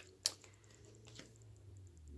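A tarot card being handled and laid down on a spread of cards: one sharp click about a quarter second in, then a couple of fainter clicks.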